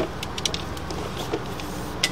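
A steady low mechanical hum with a sharp click right at the start and a few faint ticks after.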